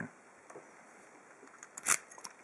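Key going into the keyway of a brass Euro-profile pin-tumbler cylinder: a few sharp metallic clicks near the end, after a faint single click about half a second in.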